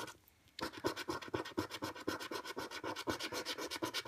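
A coin scratching the silver scratch-off coating from a paper lottery scratchcard in rapid, repeated strokes, starting after a short pause.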